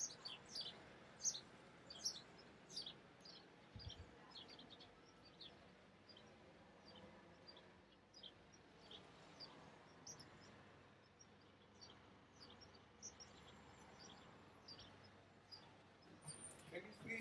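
Small birds chirping faintly outdoors: many short, high chirps in quick succession, busiest in the first few seconds and sparser after, over a faint steady background hush.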